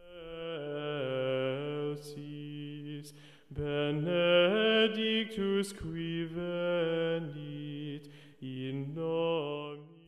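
A slow sung chant of held and gliding notes, in three phrases with short breaks about three and a half and eight and a half seconds in.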